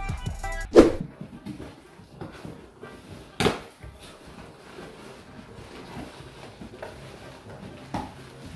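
Background music that stops about a second in, then two sharp knocks, about a second and about three and a half seconds in, the second the loudest thing after the music. Between and after them, faint rustling and scraping of a cardboard shipping box having its flaps opened.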